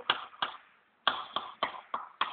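Chalk tapping and clicking on a chalkboard as a line of words is written: about six short, sharp clicks, with a brief pause about halfway through.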